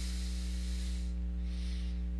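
Steady electrical mains hum with a faint hiss, picked up through a headset microphone's recording chain; a soft airy hiss comes through in the first second and again briefly near the end.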